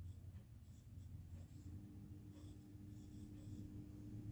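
Faint scratching and tapping of a stylus writing on a tablet screen in many short strokes, over a low steady hum. A faint steady tone comes in about a second and a half in.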